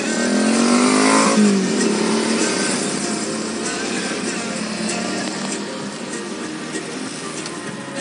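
A vehicle engine close by revs up, its pitch rising over the first second and a half, then city traffic noise carries on steadily. Music plays underneath.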